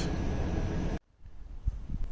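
Steady background hiss that cuts off suddenly about a second in, followed by faint, uneven low wind rumble on the microphone outdoors.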